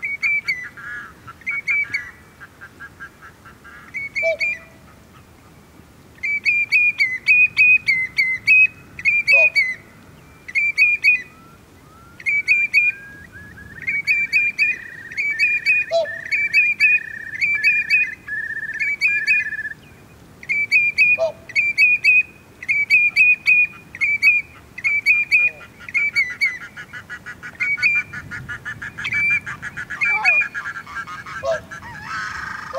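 Birds calling: short, nasal pitched calls repeated in quick bursts every second or two. In the middle comes a run of lower, evenly spaced notes that rise at first and then hold steady for several seconds.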